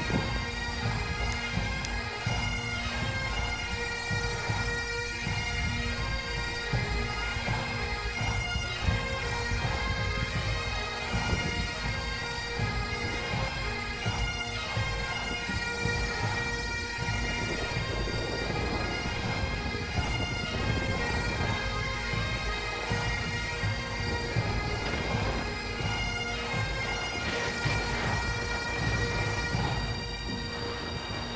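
Bagpipe music: a Highland bagpipe tune played over steady held drones, with a low rumble underneath.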